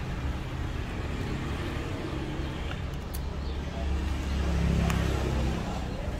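Steady low rumble of road traffic that swells as a vehicle passes about four seconds in, with a couple of faint light clicks.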